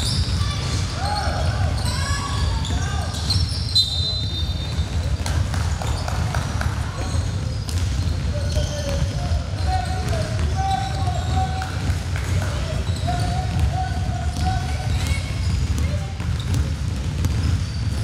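Sound of a basketball game in a gym: a ball bouncing on a hardwood court and players calling out to each other, over a steady low rumble of the hall. A brief high-pitched squeak comes about four seconds in.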